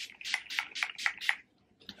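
Hairspray spritzed onto the hair in about six quick hissing bursts over the first second and a half.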